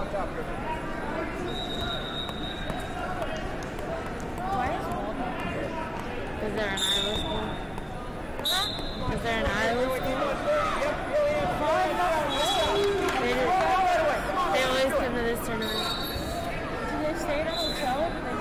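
Wrestling-tournament hall sound: many voices of coaches and spectators calling out, rising to shouting about halfway through. Short referee whistle blasts sound several times, with thuds of feet and bodies on the mat.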